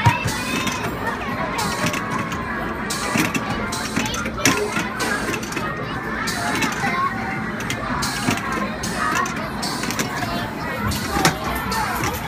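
Busy arcade game-room din: background music mixed with children's voices and crowd chatter, with scattered clicks and knocks from the games.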